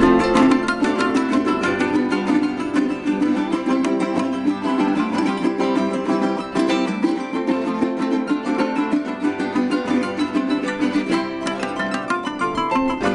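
Son jarocho ensemble playing an instrumental passage: small jaranas strummed in a quick, steady rhythm over a harp.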